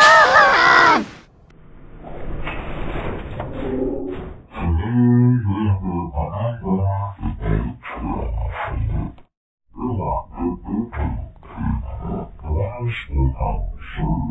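Cartoon character voices, heavily pitch-shifted low and distorted by an editing effect, talking and singing in a deep, gruff register. A loud burst of higher singing in the first second cuts off abruptly, the voice then goes on muffled with its top end cut, and it breaks off briefly a little after the middle.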